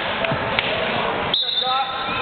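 Noise of a wrestling bout in a gym hall: feet thudding and scuffing on the mat over the murmur of spectators, with a few sharp knocks. Past halfway a thin high tone and shouting voices come in.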